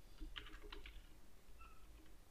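Computer keyboard keystrokes, faint: a quick run of taps in the first second as a word is typed.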